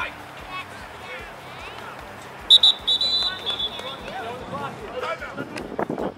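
Referee's whistle, a short blast and then a longer one about two and a half seconds in, over the scattered shouts and chatter of players and spectators on the field.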